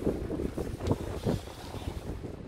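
Wind buffeting the microphone in uneven gusts, a low rumble with no clear tone.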